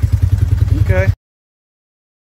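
ATV engine idling with a rapid, even low pulse. A brief voice sound comes just before the sound cuts off suddenly a little over a second in.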